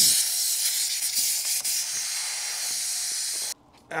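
CO2 cartridge inflator with a 16 g cartridge discharging at a bicycle tyre valve: a loud steady hiss that cuts off suddenly near the end. The discharge failed to inflate the tyre.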